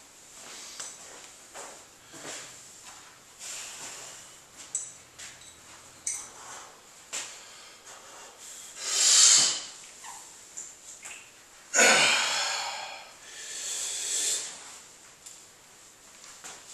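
A man breathing hard through forceful blasts of breath as he strains to bend an 8-inch adjustable wrench by hand: quiet for the first several seconds, then a loud blast about nine seconds in, a longer one about twelve seconds in and another shortly after.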